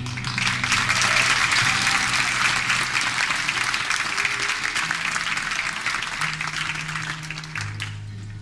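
Theatre audience applauding at the end of a scene, with a few low sustained music notes underneath. The clapping starts at once and fades away near the end.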